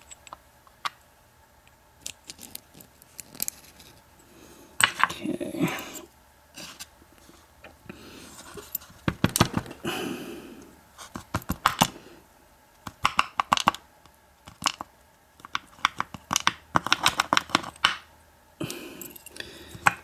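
Irregular small metallic clicks and taps from an American 5360 padlock's brass lock cylinder being handled with a plug follower, as its pin tumblers are taken out and set down in a sorting tray. The clicks come in short clusters.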